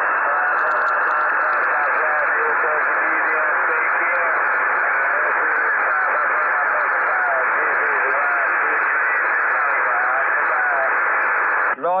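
HF transceiver's speaker receiving a weak long-distance station: a steady wall of static hiss, cut off sharply above and below, with a faint voice barely showing through it. Normal close speech returns right at the end.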